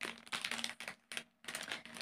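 Plastic food packaging crinkling as it is handled: a run of quick, irregular crackles and rustles.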